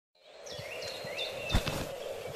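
Outdoor ambience: a bird gives several short whistled notes, some rising and some falling, over a steady low hum and hiss. A single knock comes about three-quarters of the way through.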